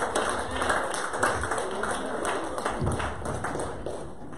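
A small group clapping hands, the claps thinning out and dying away near the end.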